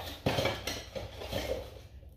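Metal jewelry-making tools clinking and rattling as they are handled, with a sharper knock about a quarter second in.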